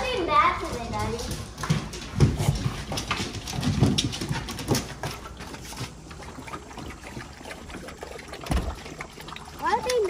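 Several pit bulls scrabbling and jostling, with their claws clicking and knocking on the floor and deck as they crowd out through a door.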